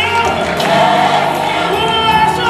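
Gospel music with a choir singing, loud and steady.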